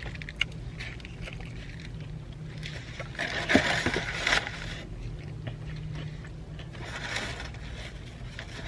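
Fried chicken being handled and eaten: scraping, rustling and crunching noises, loudest from about two and a half to four and a half seconds in, with a shorter burst near the end, over a steady low hum.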